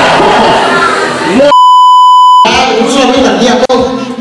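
A loud electronic beep of one steady pitch, lasting about a second in the middle, that blanks out the talk and crowd noise around it. This is typical of an edit-inserted bleep.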